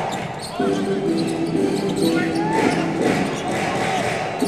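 A basketball being dribbled on a hardwood court with short sneaker squeaks, ringing in a large hall. A steady low hum of held tones runs underneath from about half a second in.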